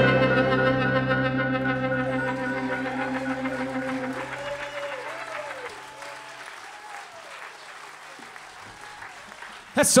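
Final strummed chord of an acoustic string band, guitars and upright bass, ringing out and fading away over about five seconds. Audience applause comes up beneath it and carries on after the chord dies.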